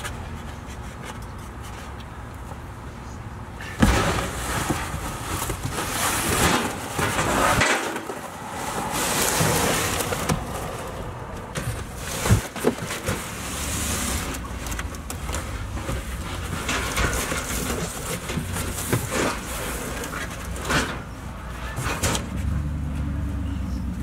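Cardboard boxes being handled and slid out of a car's cargo area: rustling and scraping of cardboard with a few sharp knocks, starting about four seconds in after a low hum of traffic.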